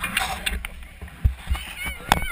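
People's voices nearby, with several sharp knocks and two low thumps close to the microphone.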